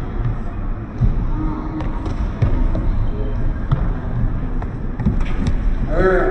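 Live futsal game sound in a large indoor hall: repeated knocks of the ball being kicked and bouncing on the wooden court, with faint players' voices.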